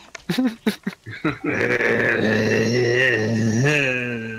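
A man's long, low groan, held for about three seconds with a slight waver in pitch, after a few short breathy sounds.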